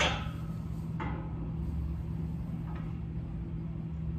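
Steady low background hum with no speech, broken by a short noise right at the start that fades quickly, a softer one about a second in and a faint one near three seconds.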